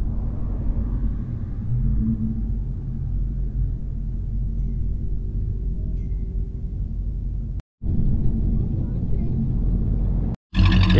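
Steady low rumble of outdoor ambience, with faint background voices. The sound drops out abruptly for a split second about three-quarters of the way through.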